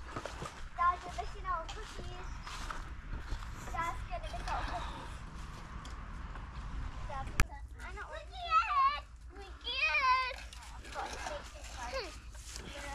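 Children's voices at play: scattered chatter and calls, with louder high-pitched calls about eight to ten seconds in, over a steady low rumble. A single sharp click sounds a little past seven seconds.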